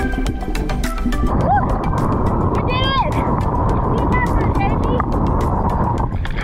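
Splashing surface water loud on an action camera's microphone as it comes up out of the sea about a second in, with short excited whooping cries from the two snorkelers over it.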